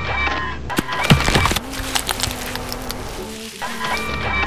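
Cartoon sound effects of a bulldozer's rear ripper being lowered: a motorised whir over a low engine rumble, with a sharp crack about a second in as the shank bites into the ground. Light background music plays underneath.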